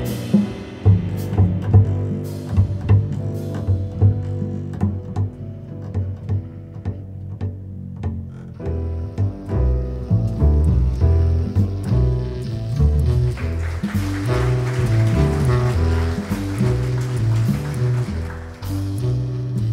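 Upright double bass played pizzicato in a jazz bass solo, a quick line of plucked low notes. Near the end a drum kit's cymbals come in softly underneath as the band starts to rejoin.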